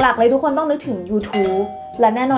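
A woman speaking, then about a second and a quarter in a bright, bell-like ding of an editing sound effect rings out and holds, over her voice.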